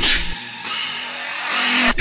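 Riddim dubstep music. A heavy bass hit cuts off shortly after the start, leaving a quieter stretch of noisy synth sound that swells back up near the end.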